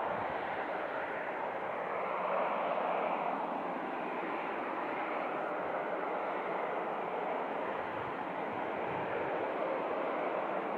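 Embraer E190's twin GE CF34 turbofans at taxi power, heard from across the airfield as a steady jet hiss and whine, with faint tones drifting slowly up and down as the aircraft rolls.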